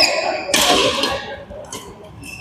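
Badminton rally sounds: sharp racket strikes on the shuttlecock and short shoe squeaks on the court floor. The busiest burst comes about half a second in, and the rest is quieter.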